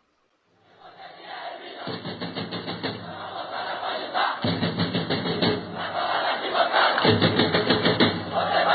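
A crowd chanting over music, fading in after a brief silence and growing louder.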